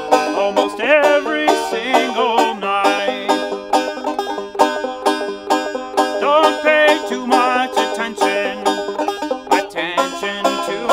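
Banjo picked in a steady rhythm, with a man singing over it at times.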